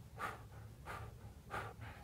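A man's soft breathing: three faint, airy puffs of breath, about two-thirds of a second apart.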